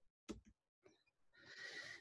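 Near silence, with a faint click about a third of a second in and a woman's soft in-breath in the last half second.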